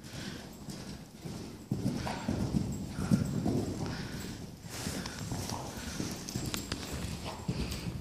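Hoofbeats of horses cantering loose over the soft sand footing of an indoor riding arena: a run of dull, irregular thuds that grows stronger about two seconds in.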